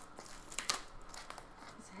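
Clear plastic shrink wrap crinkling and crackling as it is pulled off a sealed cardboard box, with a sharper crackle under a second in.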